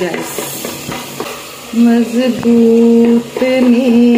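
Wooden spoon stirring and scraping chicken masala in a clay pot, with a light sizzle of frying. About two seconds in, a woman starts humming a devotional psalm tune in long held notes, louder than the stirring.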